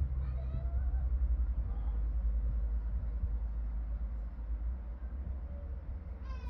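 A steady low rumble in the background, with faint wavering higher sounds in the first couple of seconds.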